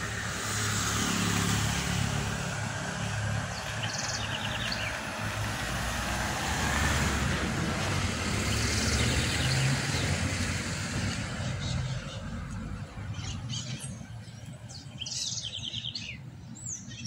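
A motor vehicle going by: engine hum and road noise swell and hold for several seconds, then fade over the last few seconds. A few short bird chirps sound over it.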